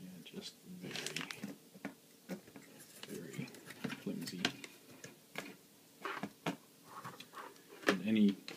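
Handling noises: scattered light clicks and knocks from the quadcopter frame and its thin landing legs being picked up and moved, with some rustling near a plastic bag and faint muttered speech.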